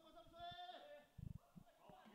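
Near silence, with a faint, drawn-out voice call in the first second and a faint low thump just past the middle.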